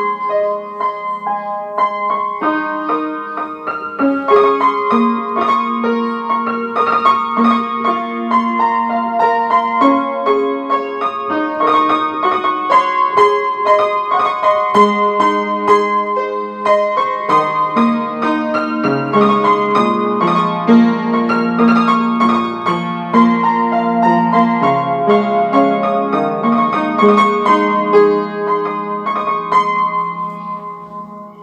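Background piano music: a melody played over sustained chords, fading out near the end.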